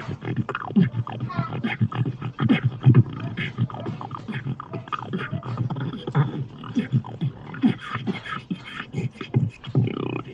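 Human beatboxing: a continuous, fast run of vocal kick drums, snares and clicky hi-hat sounds.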